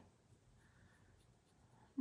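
Near silence, with a faint soft rubbing of a makeup applicator on skin.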